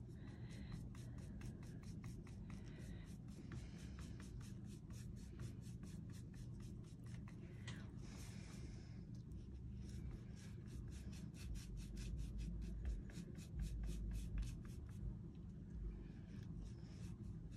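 Paintbrush bristles stroking chalk paint across a flat painted pumpkin surface, a faint scratchy rubbing that goes on throughout.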